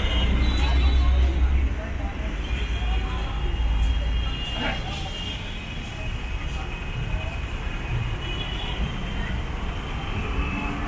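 Busy roadside traffic ambience: a low rumble of passing road vehicles, loudest in the first two seconds, under indistinct chatter of people nearby.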